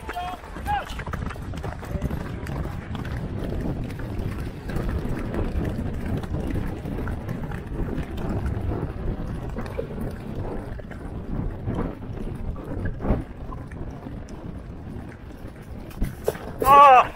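Several racehorses galloping on grass turf, a continuous irregular drumming of hooves, heard from on top of one of the horses. A sharp knock stands out about three seconds before the end.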